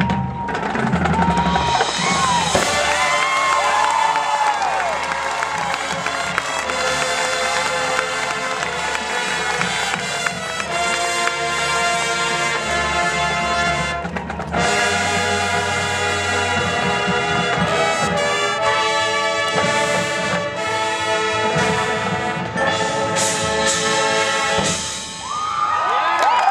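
Marching band playing full brass chords over percussion. Cheering from the crowd comes through early on and again near the end, where the music breaks off briefly and the cheering rises.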